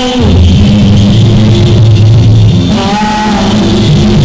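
Live gospel praise band playing at full volume: drum kit, bass and guitar, with a short melodic line coming in about three seconds in.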